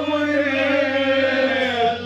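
A man singing one long, wavering phrase of a Kashmiri Sufiyana song.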